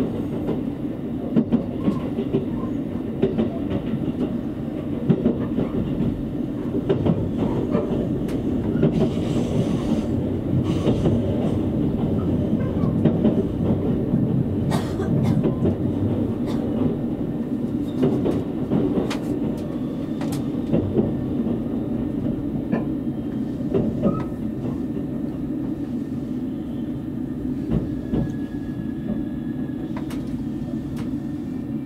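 Cabin running noise of a JR Kyushu 787 series electric express train, heard from a passenger seat: a steady low rumble of wheels on rail with scattered clicks and knocks from rail joints.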